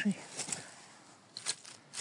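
Dry pine needles and twigs on the forest floor crackling as they are disturbed: a few short, sharp crackles, about half a second in, twice about a second and a half in, and again near the end.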